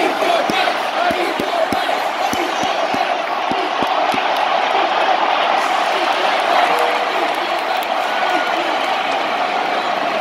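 Large stadium crowd cheering and shouting, a dense steady roar, with a run of soft low thumps during the first four seconds.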